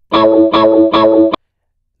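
A chopped guitar rhythm sample triggered from an MPC pad in forward loop mode: a chord struck three times about half a second apart, then cut off abruptly about 1.4 s in as the short chop ends.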